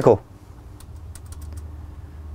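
A short run of quick computer-keyboard clicks about a second in, over a faint, steady, low hum.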